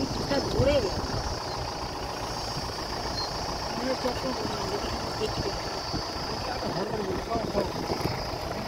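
Safari vehicle's engine running steadily as it drives along a forest track, with a steady high-pitched hiss above it and faint voices now and then.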